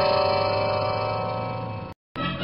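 Science-fiction materialisation sound effect: a steady electronic chord of several held tones that slowly fades and cuts off abruptly just before the end.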